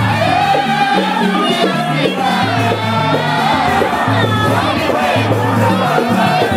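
A group of men singing an Islamic devotional song (qaswida) together, loud and continuous, over frame drums.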